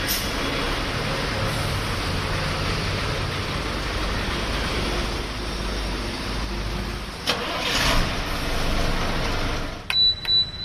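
Diesel bus engine idling steadily, with a short click about seven seconds in.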